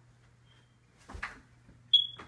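A short noisy swish about a second in, then a brief, loud, high-pitched beep near the end, over a faint steady low hum.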